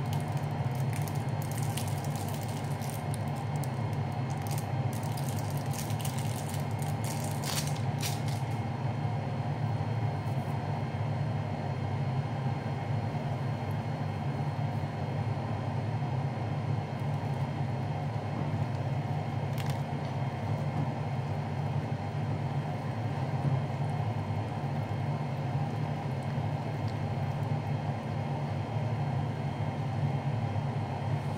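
Crinkling and crackling of plastic food wrapping being peeled and handled, dense for the first eight seconds or so with a single click later on, over a steady low hum that never changes.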